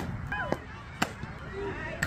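Fastpitch softball smacking into a catcher's mitt with a sharp pop, then more sharp cracks about half a second and a second later, with short voice calls from the field between them.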